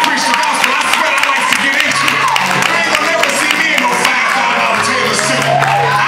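Church congregation shouting and clapping over keyboard music. Sustained low bass notes come in about two seconds in and again near the end.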